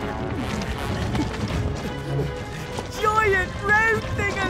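Cartoon sound effect of a large stone boulder rolling and rumbling, over background music. About three seconds in, wavering vocal cries of alarm come in.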